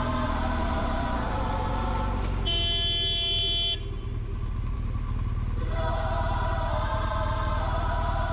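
Motorcycle engine running steadily in traffic, with a vehicle horn sounding once for a little over a second about two and a half seconds in.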